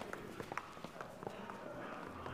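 Footsteps of several people walking quickly: a rapid, irregular run of short clicks.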